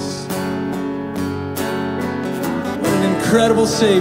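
Live worship band music: held chords with guitar strumming, and a voice singing again from about three seconds in.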